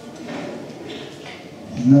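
A lull in a man's speech filled with faint room noise and a few soft, short rustles or shuffles, then his voice starts again near the end.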